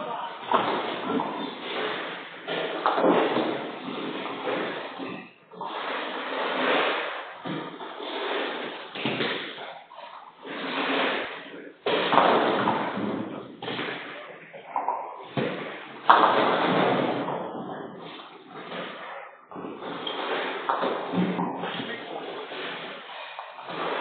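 Nine-pin bowling balls rolling down several lanes and knocking into the pins, a run of overlapping rumbles and clattering crashes with a few sharp knocks, echoing in a large hall. Faint voices underneath.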